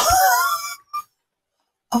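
A brief, breathy laugh lasting under a second, followed by a silent pause.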